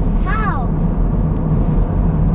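Steady low road and engine rumble inside a moving car's cabin at expressway speed. A single short voiced sound, a brief word or murmur, comes about half a second in.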